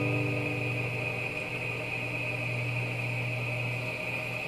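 A strummed guitar chord dies away in the first half second, leaving a steady hiss and low electrical hum from the recording.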